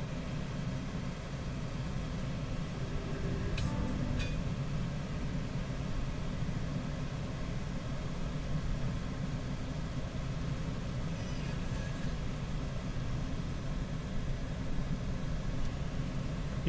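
The Citroën C3 Picasso's 1.6-litre HDi four-cylinder turbo-diesel idles steadily, heard from inside the cabin, with the air-conditioning blower running. A couple of light clicks from dashboard buttons come about three to four seconds in.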